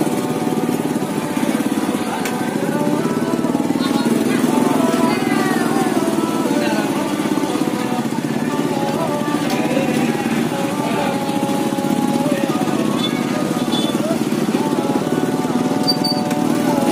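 Small motorcycle engine running steadily close by, with voices and music in the background.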